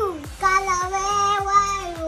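A child's voice holding one long, level sung note over background music with a steady beat.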